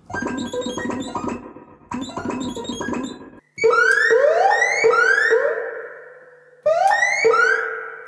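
1970s Practical Electronics DIY modular synthesizer sounding as its envelope generator is triggered from a newly fitted button: two short noisy bursts, then a run of quick upward pitch sweeps, each fading, about two a second, with a short break before they resume near the end.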